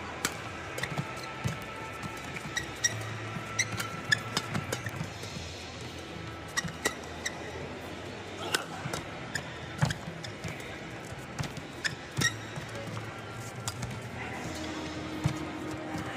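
Badminton rackets striking a shuttlecock back and forth in a long rally: sharp hits at irregular intervals, roughly a second apart, with short squeaks of shoes on the court over a steady arena background.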